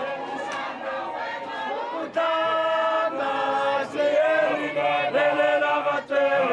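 A crowd of many voices singing together in chorus, holding long notes; the singing gets louder about two seconds in.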